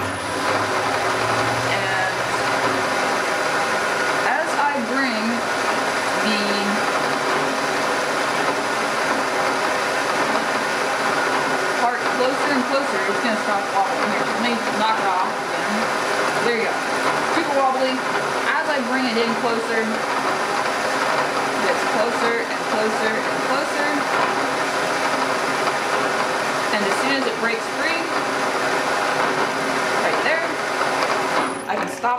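Milling machine spindle starting up and running steadily at 600 RPM, spinning an edge finder in the chuck. The sound holds a constant pitch with several fine steady tones.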